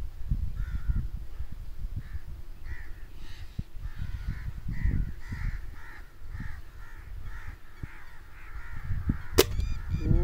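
Crows cawing repeatedly over a low rumble. Near the end comes a single sharp crack: the air rifle firing.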